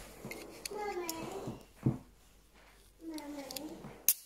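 An aluminium drink can being handled, its ring pull fingered, with one sharp click about two seconds in, while a man makes short wordless vocal sounds twice.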